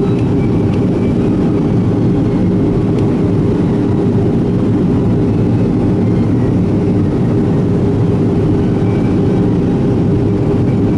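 Steady cabin noise inside a Boeing 737-800 in flight on approach with flaps extended: its CFM56-7B turbofan engines running, heard as a loud, even low drone with a few constant hum tones.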